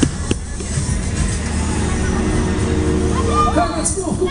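Onride sound of a KMG X-Drive fairground thrill ride in motion: a steady low rumble with fairground music over it. There are two sharp clicks at the start, a held pitched tone joins about halfway through, and a voice calls out near the end.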